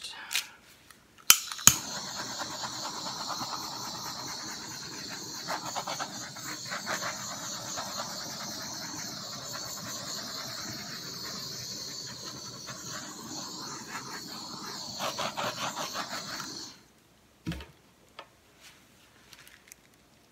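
Handheld butane torch lit with two igniter clicks, then a steady hiss of the flame for about fifteen seconds as it is passed over wet acrylic paint to pop air bubbles, cutting off suddenly. A light knock follows.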